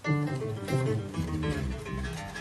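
Electric guitar playing a quick run of plucked notes with a strong low end, starting abruptly.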